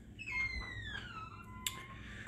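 A door hinge squeaking as the door swings: one long squeal falling in pitch, with a sharp click near the end.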